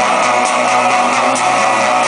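Live band playing loud electro-rock through a club PA, with electric guitar over a steady beat of high ticks about twice a second, heard from within the crowd.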